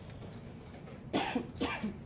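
A person coughing twice in quick succession, just after a second in.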